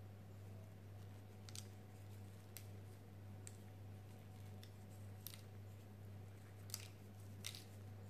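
Faint steady low hum with a few light, scattered clicks as sesame seeds are pinched from a small ceramic dish and sprinkled over egg-washed dough.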